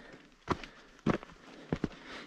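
A hiker's footsteps going uphill on a rocky dirt trail: four or five short, sharp footfalls on stone and grit, roughly every half second.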